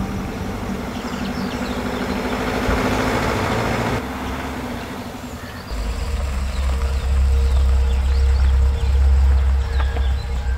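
An old Hindustan Contessa sedan's engine running as the car drives along a dirt road. A deep, steady rumble sets in about six seconds in.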